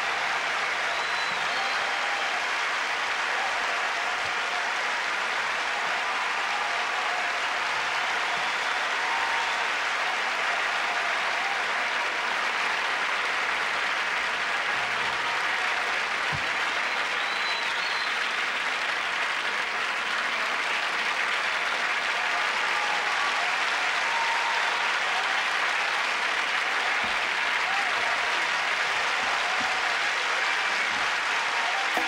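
Large theatre audience applauding, a dense, steady clapping that holds at one level throughout.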